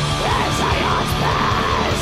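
Atmospheric black metal: distorted guitars and drums with a harsh, screamed vocal line.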